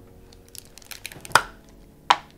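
Plastic end cap being twisted and pulled off a masturbator's hard plastic case: a run of small clicks and rustles, then one sharp click a little over a second in.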